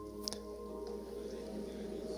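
Soft keyboard chords held steadily under a pause in a spoken prayer, with a faint click about a quarter second in.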